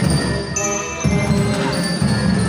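Brass marching band playing a tune, with brass carrying the melody over a steady low beat.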